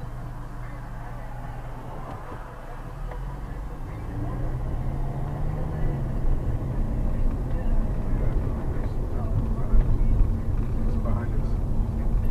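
Car engine and road noise inside the cabin. About four seconds in the engine note rises as the car speeds up, and the rumble stays louder from then on.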